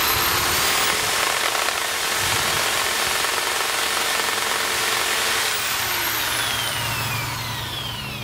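Corded electric drill spinning a wet paint roller at high speed to fling the rinse water out of its nap: a steady whirring that falls in pitch and winds down near the end.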